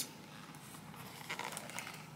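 Faint handling of a cardboard chocolate box with a plastic window: a few soft rustles in the second half, over quiet room tone.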